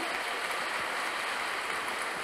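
Large audience applauding in a big hall, a steady dense clapping.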